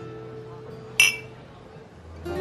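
Two glass tumblers clinked together in a toast: a single sharp glass clink about a second in, ringing briefly, over soft guitar music.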